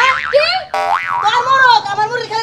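A woman's high-pitched voice, with springy cartoon-style 'boing' sound effects whose pitch wobbles up and down in the first second.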